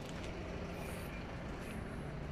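Kobelco SK210 LC excavator's Hino J05E-TG four-cylinder turbo diesel running steadily with an even low hum.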